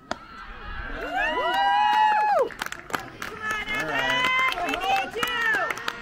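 A metal baseball bat hitting the ball with one sharp crack right at the start, followed by spectators shouting and cheering in long, drawn-out calls that come in two waves.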